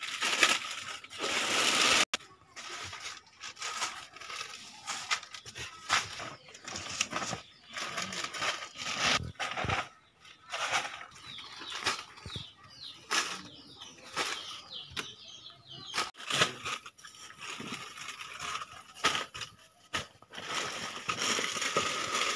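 Plastic and cloth bags rustling and crinkling as they are handled and passed from hand to hand, with scattered small knocks. The sound breaks off abruptly a few times.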